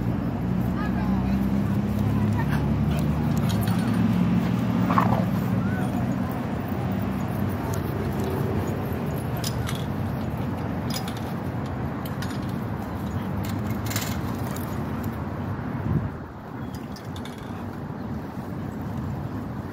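A motor vehicle's engine running with a steady low hum that fades after about six seconds, and a few sharp metallic clicks along the way.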